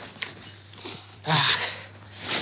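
A brief non-word vocal sound from a person, one short burst about one and a half seconds in, with a few faint clicks before it.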